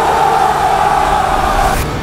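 Trailer sound design: a loud, sustained tone over a low rumble, cutting off suddenly near the end with a brief hiss at the cut.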